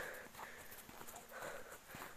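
Faint footsteps crunching in snow as people walk along a snowy path, in a few soft, uneven steps.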